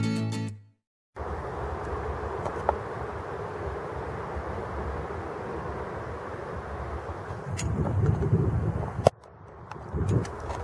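The tail of acoustic guitar music ends abruptly. After a moment of silence comes steady outdoor rushing noise beside a river, which swells with a low rumble near the end and then cuts off.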